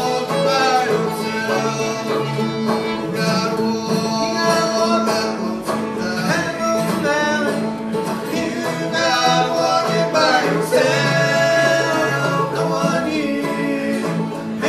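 Old-time Appalachian string band playing a tune: fiddle, open-back banjo and acoustic guitar together, the fiddle carrying the melody over the picked banjo and strummed guitar.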